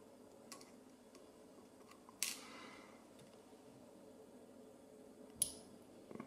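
Small lock parts and tools being handled while a pin-tumbler lock is taken apart: two sharp clicks about three seconds apart, the first ringing briefly, over faint ticks.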